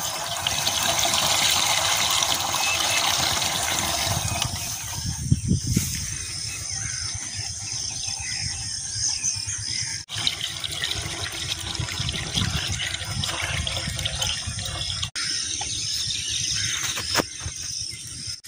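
Diesel fuel pouring in a stream from a plastic jerrycan through a cut-off plastic bottle into an engine's fuel tank, louder for the first few seconds.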